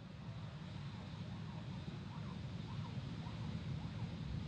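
Steady low rumble of the Soyuz booster's engines heard from far off as the rocket climbs, with faint wavering tones above it.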